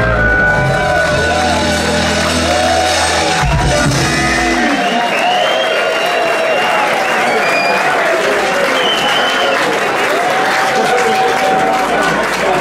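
A live electric band finishes a song, its last chord cutting off about five seconds in. Audience applause and cheering follow.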